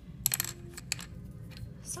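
Light, hard clicks of wooden drawing pencils knocking together and against the drawing board as one pencil is put down and another picked up: a quick cluster with a brief ring about a quarter second in, then a couple of single taps.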